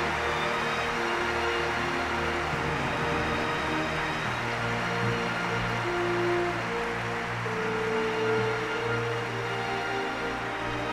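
Orchestra playing slow walk-on music of held, sustained chords that shift every second or two, with audience applause beneath.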